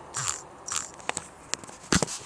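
Handling noise of the recording camera being grabbed and moved: a few rustles, scrapes and clicks, with the loudest a sharp knock just before the end.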